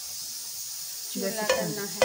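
Ghee heating in a pan, giving a steady, faint high sizzle. About a second in, a voice starts over it, with a couple of sharp clicks.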